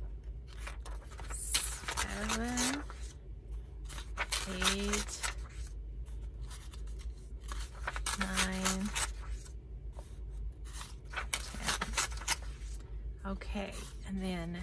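Pages of a hardback book being turned one at a time, with short dry flicks and rustles of paper.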